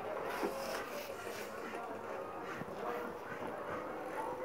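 Faint background voices over steady room noise, with a few soft knocks.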